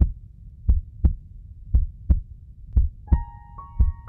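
Heartbeat sound effect: deep double thumps, about one beat a second. About three seconds in, soft sustained piano-like notes come in over it.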